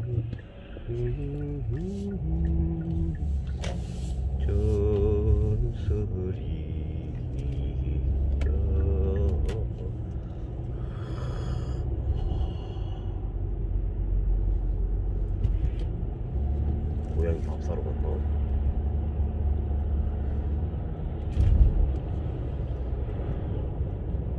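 Steady low rumble of a car's engine and tyres heard from inside the moving cabin, with a voice singing a few drawn-out, wavering notes now and then.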